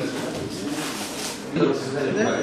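Indistinct murmur of people talking in a room, with no clear words.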